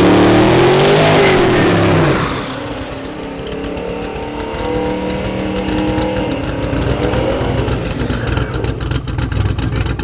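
American V8 drag car doing a burnout: the engine is held high and revved up and down over the spinning rear tyres, and cuts back suddenly about two seconds in. After that the V8 runs at a steady, lumpy low speed, picking up briefly around the seven-second mark as the car rolls forward.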